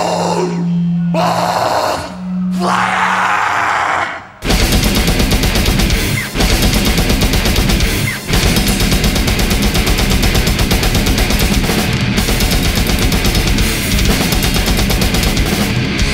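Death metal band: two held, distorted notes ring out, then about four seconds in the full band crashes in with heavy guitars and fast drumming.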